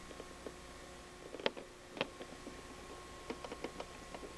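Faint scattered clicks and crackles, two sharper ones about a second and a half and two seconds in and a quick run of small ticks near the end, over a faint steady hum.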